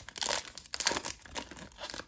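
Foil wrapper of a trading card pack crinkling and tearing as it is pulled open by hand. It comes as irregular crackles, loudest about half a second in, then fainter.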